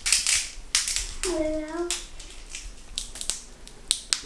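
Neon glow-stick bracelets being bent by hand, their inner glass vials cracking in an irregular run of sharp snaps and crackles, like knuckles cracking; breaking the vials is what sets them glowing.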